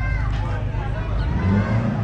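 Lookout Mountain Incline Railway car rolling along its track toward the station: a low rumble that swells near the end, under background voices.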